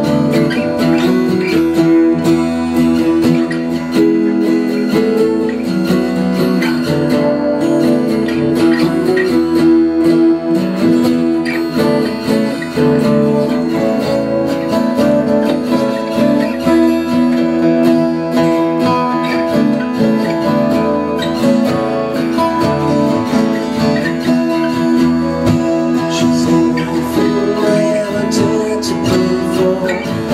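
Three acoustic guitars playing together, strummed and picked in an instrumental passage.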